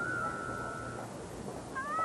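A cat meowing, with a long wavering call that starts near the end.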